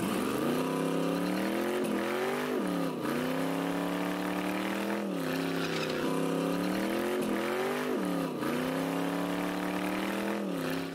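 Drag car's engine held at high revs during a burnout, its pitch dipping sharply and climbing back four times, over the hiss of the spinning rear tire.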